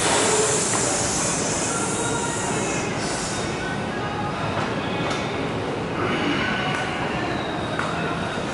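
Steady rushing gym room noise with faint background music and a couple of faint clicks.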